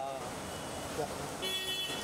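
A short car horn honk, about half a second long, sounds about a second and a half in, over background voices.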